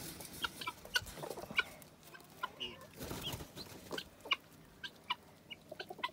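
Guinea fowl chirping: short, sharp peeps repeated roughly twice a second.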